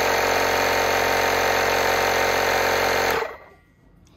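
Small 3-gallon portable electric air compressor running loud and steady as it fills its tank, then switched off about three seconds in.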